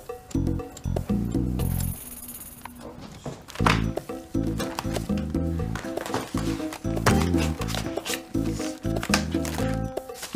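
Background music of short, bouncy low notes in a steady rhythm, thinning out for a moment about two seconds in.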